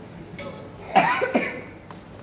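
A person coughing: a short, sudden cough with a second burst just after, about halfway through.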